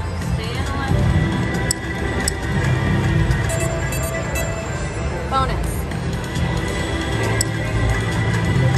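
Casino Royale–themed video slot machine playing its game music and spin sound effects, with short sharp clicks and a brief rising chime-like glide about five seconds in, over a murmur of voices.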